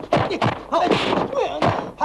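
Fist-fight sound effects: several sharp punch and blow impacts in quick succession, mixed with short shouted yells and grunts from the fighters.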